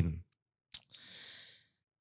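A short mouth click, then a soft breath lasting under a second, close on the microphone.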